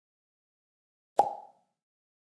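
A single sharp click-pop sound effect about a second in, dying away within a third of a second, from an animated subscribe button being pressed. Silence otherwise.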